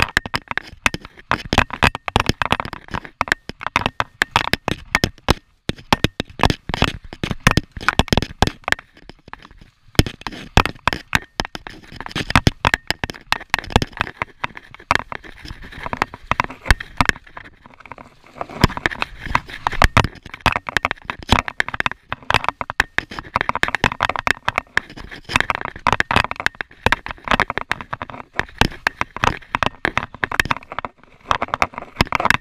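Downhill mountain bike riding over a rough dirt and leaf-litter trail, heard through a rider-mounted action camera: a dense, irregular clatter of knocks and rattles from the bike and camera mount over bumps, with the tyres crackling over the ground. There are a couple of brief lulls.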